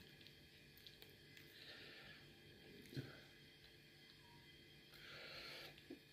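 Near silence: room tone, with a faint tick about halfway through.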